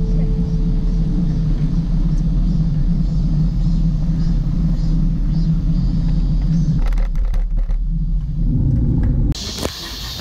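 Wind buffeting the microphone of a camera carried along on a moving road bicycle, a loud steady low rumble. It cuts off suddenly about nine seconds in to a quieter hiss.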